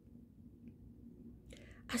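Quiet room tone with a faint low hum, then a woman's short breath in about a second and a half in, just before she starts speaking again.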